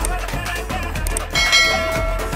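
Dance music with a steady beat, joined about one and a half seconds in by a bright ringing bell chime, the notification-bell sound effect of a subscribe-button animation.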